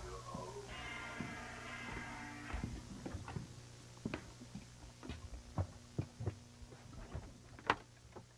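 Steady electrical hum in a recording room, with a held ringing tone about a second in that lasts under two seconds. Then comes a run of knocks and clicks of a door being opened and handled, the sharpest near the end.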